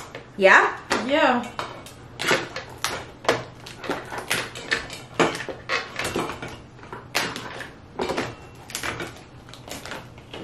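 Whole cooked Dungeness crab shells being cracked and pried apart by hand, giving an irregular string of sharp cracks and clicks. A short voiced sound with a gliding pitch comes in the first second or so.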